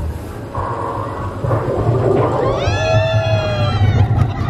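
A single long high-pitched cry, rising and then held for about a second, starting about two and a half seconds in, over a steady low rumble from a roller coaster ride.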